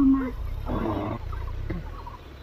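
A person's voice drawing out a low syllable, then a short breathy sound a moment later, over a steady low rumble.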